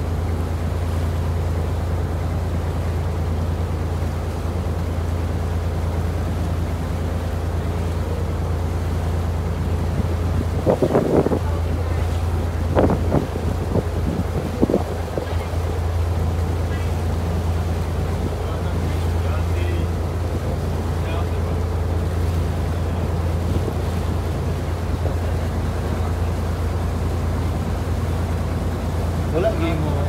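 Small wooden boat's engine running with a steady low drone, together with water and wind noise. A few brief louder sounds come about a third of the way in.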